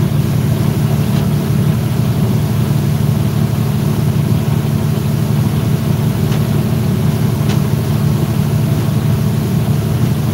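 Motorboat engine running steadily under way, a constant low drone, with a few faint ticks over it.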